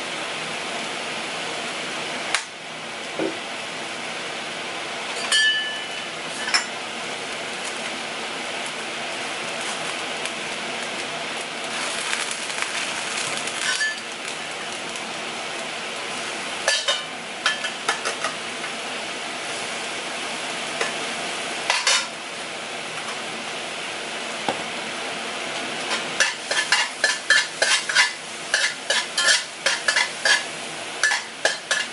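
Shimeji mushrooms sizzling steadily in a hot wok as they cook off their water, with a few sharp clinks and knocks along the way. Near the end a spatula stirs them in quick strokes against the wok, several scrapes a second.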